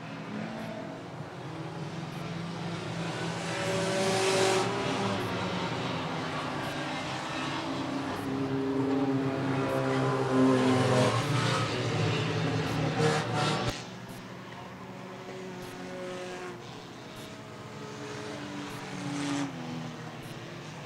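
Several enduro race cars running at speed around a short oval track, their engine notes overlapping and swelling as the cars pass. The sound drops off abruptly about two-thirds of the way in and carries on more quietly.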